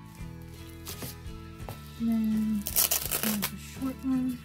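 Background music, with a short, loud rustle of packaging or tape being handled about three seconds in.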